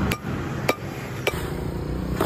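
Ice in a cloth sack being pounded with a hand tool to crush it: two sharp knocks about half a second apart over a steady low hum. The ice is crushed to pack around kulfi moulds in a clay pot.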